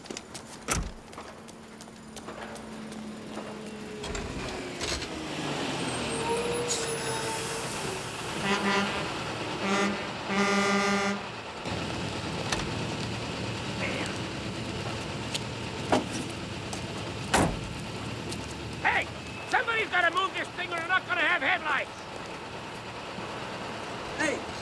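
City street traffic with a car horn honking several short blasts about nine seconds in, the last one held a little longer. Voices are heard near the end.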